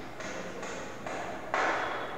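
A stack of paper sheets rustling as they are leafed through, a run of short rustles about two a second, with the loudest one near the end.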